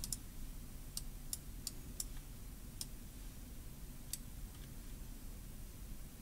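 About seven faint, irregular computer-mouse clicks, mostly in the first three seconds, over a low steady hum.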